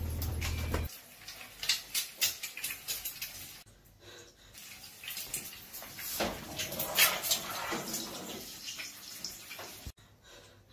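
Hot cooking oil sizzling and spitting in a frying pan on a gas stove, with irregular sharp crackling pops. A steady low hum stops about a second in.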